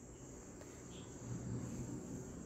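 A faint, steady high-pitched tone held throughout, over quiet room tone.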